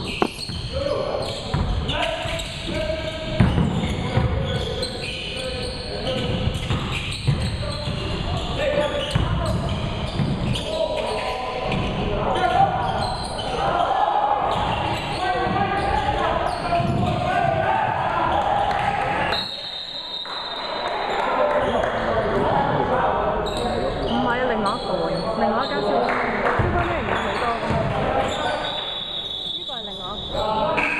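Basketball bouncing on a hardwood gym floor during play, mixed with the players' and spectators' voices and shouts echoing in the hall.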